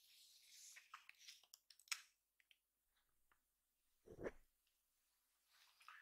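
Faint handling noise with a few small clicks as the tilting rear screen of a Canon G7X Mark II compact camera is swung on its hinge, then one short, louder sound about four seconds in.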